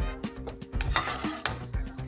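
Cooked mezzi rigatoni tipped from a metal slotted spoon into a frying pan of hot cream sauce, with sizzling and stirring sounds and a noisy burst about a second in, over background music with a steady beat.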